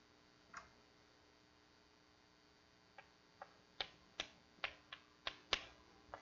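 Chalk on a blackboard while writing: a short soft stroke about half a second in, then a quick run of about eight sharp taps over the last three seconds, the loudest near the end.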